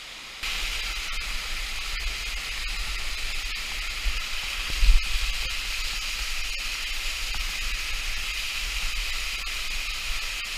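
Waterfall water rushing and splashing right over the camera, a dense steady hiss with a low rumble. It starts suddenly about half a second in, and there is a louder thump about five seconds in.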